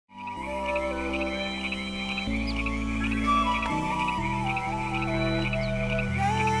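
Intro music of sustained chords that shift every second or two, over a steady, high, rapid chirping like frogs or insects at night.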